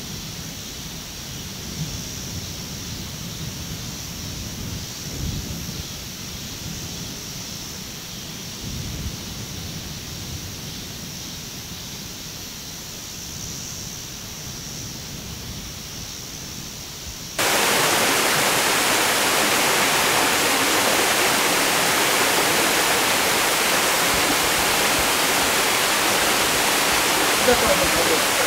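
Loud, steady rush of a small waterfall cascading over rocks. It cuts in abruptly about two-thirds of the way through, after a quieter stretch of outdoor background with a low, uneven rumble.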